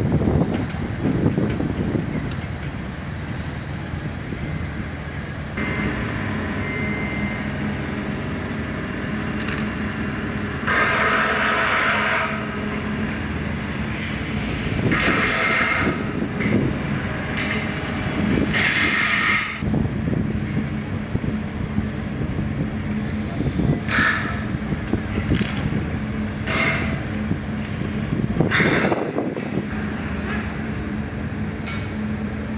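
Construction machinery running steadily with a low rumble, and from about six seconds in a steady engine hum. Short bursts of hiss, each about a second long, come every few seconds.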